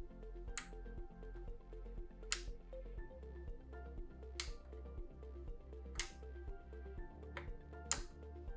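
Soft background music, with five sharp clicks spaced about a second and a half to two seconds apart from the turntable's speed selector knob being turned through its notched positions. Each click is the selector dropping into a detent as it shifts the rubber idler wheel to a different step of the motor post.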